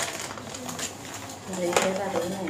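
A low, soft human voice murmuring without clear words, with a sharp click or crinkle, like a plastic packet being handled, near the end.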